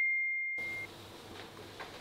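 Phone message notification: a single high, pure chime that fades away during the first second, signalling an incoming message, followed by faint room tone.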